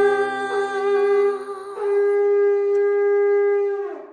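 A long curved shofar blown in one long, steady held blast, dipping briefly a little under two seconds in, then sagging in pitch as it stops just before the end.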